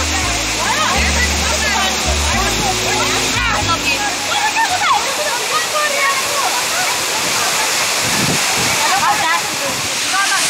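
Henrhyd Falls pouring into its plunge pool: a steady rush of falling water. Background music with low bass notes stops about halfway through, and voices sound over the water.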